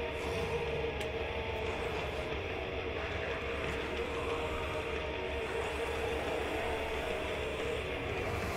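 Steady droning soundscape from a music video's intro: a held chord of a few sustained tones over an even rumbling hiss, with no beat and no voice.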